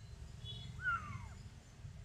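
A young kitten, being bottle-fed, gives one faint, thin mew that falls in pitch about a second in.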